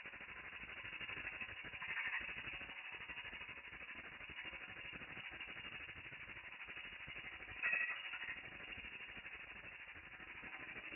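Domestic ultrasonic cleaning tank running, its cavitation noise slowed to one-eighth speed: a dull, rattling hiss with a fast, even pulse. A brief louder burst comes about three-quarters of the way through.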